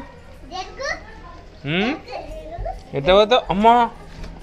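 Children's voices: a high call rising in pitch about halfway through, then louder high-pitched speaking about three seconds in, with quieter chatter between.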